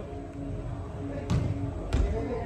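A football being kicked twice on an indoor artificial-turf pitch: two sharp thuds about half a second apart, over the low murmur of a large hall.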